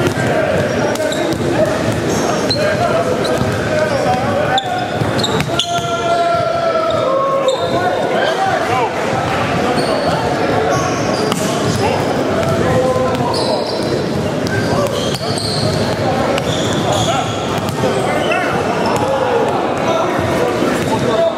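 Several basketballs bouncing on a hardwood gym floor during a shootaround, with voices talking and calling out in a large, echoing gym.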